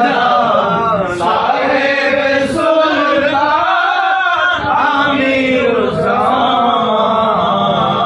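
Group of men chanting a Sufi devotional song together in Urdu, several voices singing the same line.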